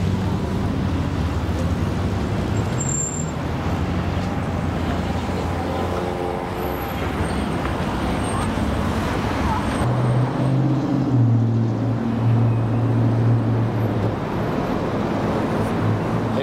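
City street traffic: car engines running and vehicles passing, with a steady low engine hum that is strongest about ten to fourteen seconds in.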